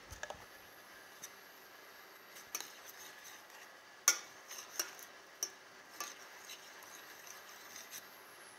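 Metal spoon stirring a thick paste and stock in a stainless steel saucepan, with irregular clinks and scrapes against the pan, the sharpest about four seconds in.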